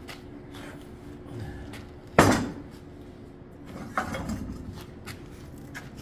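Steel parts being handled on a metal workbench: a loud metal clank about two seconds in, a lighter knock about four seconds in, and small clicks in between, over a faint steady hum.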